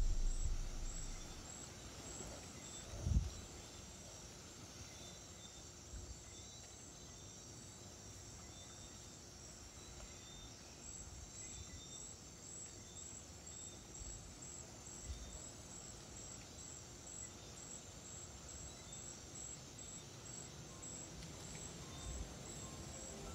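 Faint, steady background noise with a thin high-pitched hum, and a single low thump about three seconds in. Piano music fades away at the very start.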